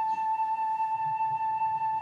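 Background film music: one long held high note, steady throughout.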